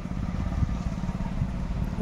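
Wind buffeting an outdoor microphone: a steady, toneless low rumble with hiss above it.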